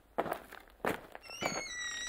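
A few quiet thuds, then faint high squeaky tones that glide in pitch in the second half.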